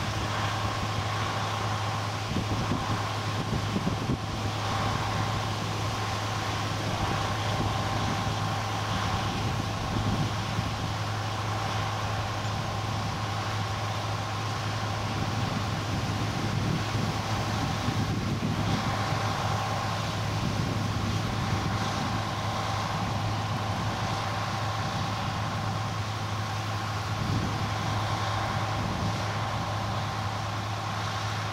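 Diesel farm machinery engine running steadily: a low drone with a faint, even whine on top.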